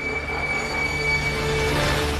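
A large vehicle's brakes squealing with one steady high whine, over street traffic noise that swells toward the end, typical of a bus pulling in to a stop.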